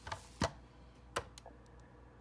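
A few sharp plastic clicks and taps from handling a BIGmack switch: a 3.5 mm plug being pulled from one jack and pushed into another, then the switch's big button being pressed. The loudest click comes about half a second in, another a little after one second, followed by small ticks.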